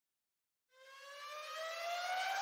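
A rising electronic tone: it fades in from silence a little under a second in and climbs slowly and steadily in pitch, like a riser leading into intro music.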